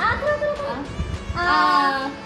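A high voice drawing out a long, steady 'aah' about a second and a half in, after a short gliding vocal sound at the start.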